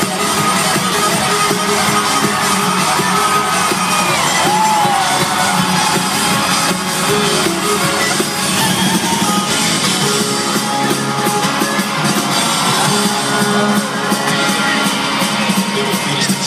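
A loud live band plays a fiddle-led instrumental break with guitar and drums, heard from within the audience, the fiddle's sliding notes standing out over the band.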